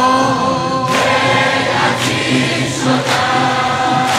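A large crowd of male mourners singing a nowheh refrain together, with a long held note fading in the first second and a sharp beat about once a second.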